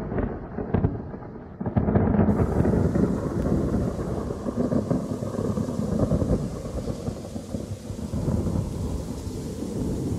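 Thunderstorm recording: low rolling thunder, with a louder burst of thunder about two seconds in as the hiss of heavy rain comes in. The rain and rumbling carry on, slowly easing.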